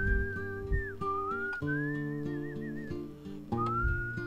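A man whistling a melody over acoustic guitar accompaniment, with glides between notes and a wavering vibrato on a held note. The whistle pauses about three seconds in and comes back near the end while the guitar carries on.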